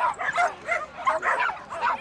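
Belgian Tervuren barking in a quick series of high, yipping barks, about three or four a second, while running the agility course.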